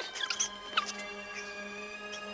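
Film score with steady held notes, broken in the first second by a few quick, very high squeaky chirps: film dialogue sped up many times over.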